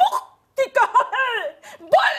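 A woman's high-pitched, animated voice: a short burst, then a longer phrase with steeply rising and falling pitch.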